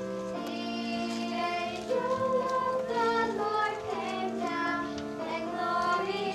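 A group of children singing a slow song together, holding long notes that change pitch about once a second.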